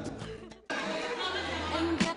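Dance music fades out and cuts off about half a second in. It gives way to a crowd of people chatting in a large hall, with faint music underneath.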